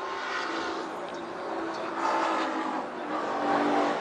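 Trackside sound of GT race car engines running at speed as the cars pass, growing louder near the end.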